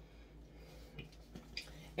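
Quiet room with a few faint ticks and rustles from hands handling a zippered vegan-leather makeup case.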